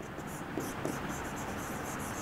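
Quiet handwriting strokes on an interactive whiteboard's touchscreen: a pen tip scratching and tapping against the glass as a word is written.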